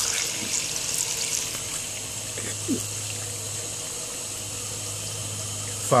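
Garden hose spray nozzle spraying a steady stream of water onto a person's face.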